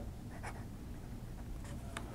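Faint scratching of an extra-fine steel fountain pen nib on Rhodia paper as a word is written: a short stroke about half a second in and a few quick strokes near the end.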